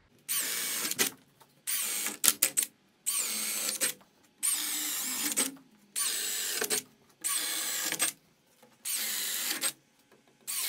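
Cordless drill boring holes through wooden wall studs for electrical cable. It runs in seven short bursts of about a second each, with brief pauses as it moves from one stud to the next.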